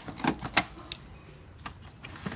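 A few short, sharp clicks and knocks of plastic printer parts being handled on an HP Smart Tank 515 inkjet printer. The loudest comes just over half a second in.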